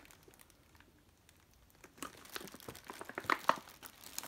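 Thin plastic ration bag crinkling in the hands as it is handled and opened, with irregular crackles starting about halfway in.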